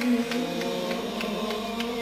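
Male vocal ensemble holding a steady sustained note as a drone under Arabic religious chant (inshad), between the soloist's lines, with a few faint light taps.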